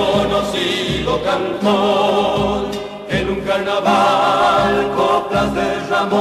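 Folk vocal group singing held notes in harmony over instrumental accompaniment.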